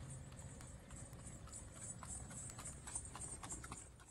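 Faint clip-clop of a horse's hooves on a paved road as it pulls a two-wheeled carriage, in light, uneven clicks several times a second.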